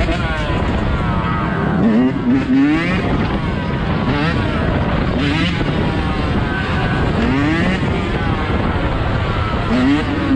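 Yamaha dirt bike engine revving hard, its pitch climbing and dropping over and over as the rider works the throttle through a wheelie.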